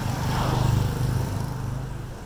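A motor vehicle's engine passing by, a low hum that swells within the first second and then fades away.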